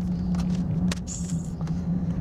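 Engine and road noise heard from inside a moving vehicle's cabin: a steady low hum with a sharp click just before a second in.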